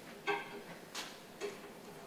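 A few short clicks and taps, about three in two seconds, the sharpest about a second in: a desk microphone being switched on and handled before someone speaks into it.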